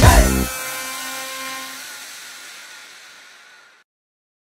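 The end of a pop song: the band and the voice stop about half a second in. A reverberant tail with a few faint held tones fades away over about three seconds.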